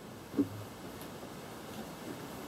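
Faint room tone with a short, low vocal sound, like a brief 'mm', about half a second in.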